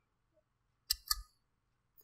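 Two quick sharp clicks about a fifth of a second apart, about a second in, against near silence: a computer mouse being clicked to advance the lecture slide.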